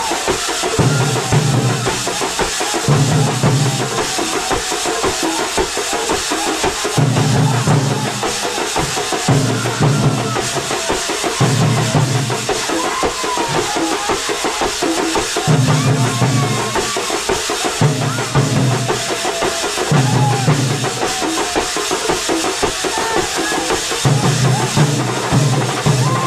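A Kerala thambolam drum band playing a loud, driving rhythm. Heavy low drum strokes come in repeating groups under a constant clash of metal percussion, with a thin wavering tune above.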